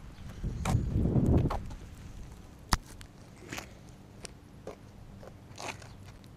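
Handling noise picked up by the camera on an FPV quadcopter as the drone is carried and set down in the grass: rustling and bumps over the first second and a half, then one sharp click and a few lighter ticks.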